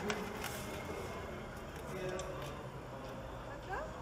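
Steady background hubbub of a busy metro station ticket booth, with faint voices and a few light clicks.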